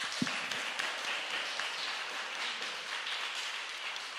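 Audience applauding: many hands clapping together in a steady patter.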